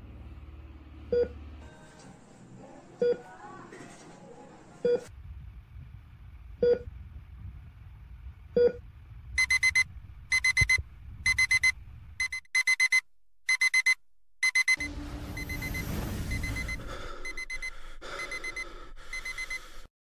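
Hospital patient-monitor beeping, added as a sound effect: a short single beep about every two seconds, then, from about halfway through, a rapid high-pitched alarm beeping in repeated bursts. This is the monitor alarm that signals a patient in crisis. A steady rushing noise fills the last few seconds.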